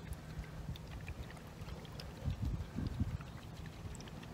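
Low wind rumble on the microphone, with a few faint ticks and a short run of low bumps a couple of seconds in.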